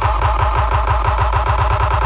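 Electronic dance music played very loud through a large DJ sound system, sounding distorted, with a fast pulsing bass beat.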